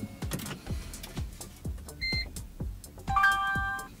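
Toyota Prius Gen 3 starting up on a newly paired smart key. There is a short beep about two seconds in, then a held chime of several tones in the last second as the hybrid system powers on, the sign that the new key is accepted.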